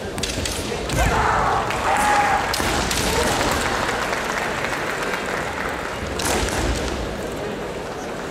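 Kendo fencers shouting kiai during a bout in a large hall, with a few heavy thumps on the wooden floor, the loudest about six seconds in.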